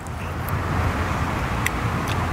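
Steady outdoor rushing noise that swells over the first half-second and then holds, with a couple of faint ticks.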